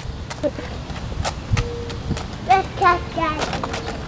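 Footsteps on a concrete sidewalk: irregular sharp clicking steps over a low outdoor rumble. A few short voice sounds come in during the second half.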